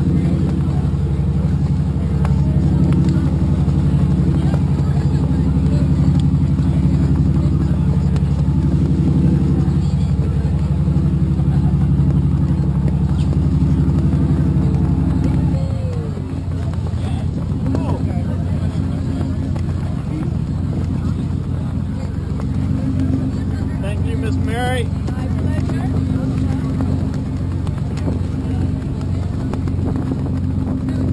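An engine running steadily with a drone of several low tones; about halfway through it drops in level and settles into a lower, pulsing note. A brief wavering whistle-like glide sounds a few seconds later.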